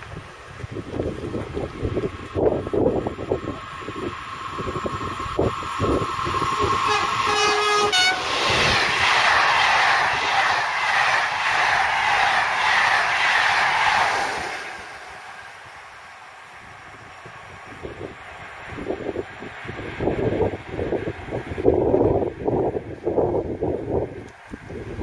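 SNCF BB 7200-class electric locomotive hauling a rake of Corail coaches past at speed. A steady high tone builds as it approaches, then the coaches' loud rushing wheel-and-rail noise lasts about six seconds and drops away suddenly. Wind buffets the microphone at the start and near the end.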